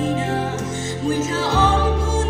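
A woman's solo voice singing a slow Christian hymn into a microphone over a sustained instrumental backing, with a deeper bass note coming in about one and a half seconds in.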